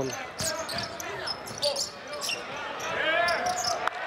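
Basketball game court sound: a ball bouncing on the hardwood floor, with short high squeaks scattered through it.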